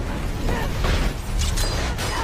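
Action-movie trailer sound effects: a run of sharp metallic clanks and crashes of debris over a heavy low rumble, as a figure is thrown through an explosion and a shower of sparks.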